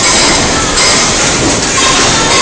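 Horizontal flow-wrap packaging machine running: a loud, steady mechanical rattle with a cycle that swells about once a second as the plastic bowls are fed, wrapped in film and sealed.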